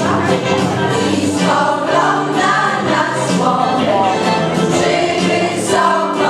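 A women's folk choir singing a Polish folk song together, with steady, held low notes from an accompanying accordion beneath the voices.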